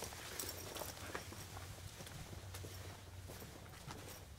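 Faint, irregular footsteps and light knocks of people walking away, over a low steady hum of room tone.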